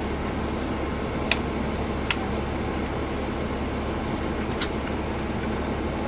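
Steady interior hum of a 2010 NABI 40-SFW transit bus standing with its Cummins ISL9 diesel idling. Two sharp clicks come a little over a second and about two seconds in, with a fainter one near five seconds.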